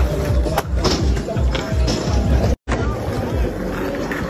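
Skateboard on asphalt: wheels rolling and several sharp clacks as the board pops and lands on a picnic-table obstacle. Music with a steady beat plays under it. The sound cuts out for a split second a little past halfway.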